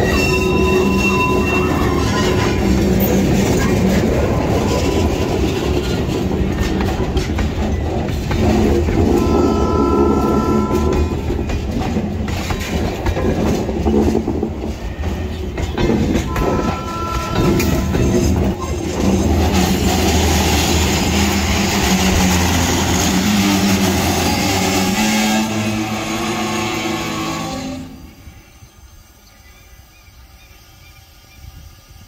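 Loaded grain hopper wagons rolling slowly past at close range, wheels clattering over the rails with two short wheel squeals, over the steady running of the EMD GR12W diesel locomotive moving the train. The sound drops away sharply near the end.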